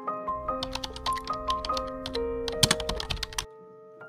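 Soft piano background music, with a quick run of light clicks and taps laid over it for a couple of seconds and a louder cluster of clicks just before they stop.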